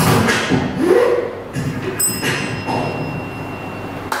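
Beatboxing into a microphone: vocal kick-drum thumps and clicky percussive mouth sounds in a hall.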